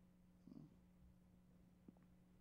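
Near silence: room tone with a steady low hum, one faint short sound about half a second in and a small click near the end.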